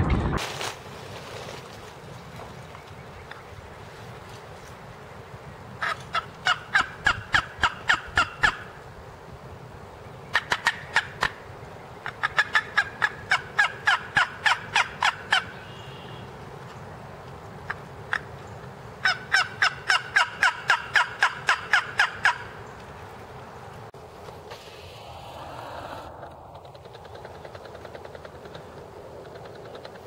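Three long runs of turkey yelping, each a quick string of about four notes a second, starting about six, ten and nineteen seconds in, over a steady background rush.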